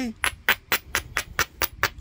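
Coarse abrading stone scraped in quick, even strokes along the edge of a heat-treated chert preform, about five rasping strokes a second. Grinding the edge like this prepares platforms for flaking.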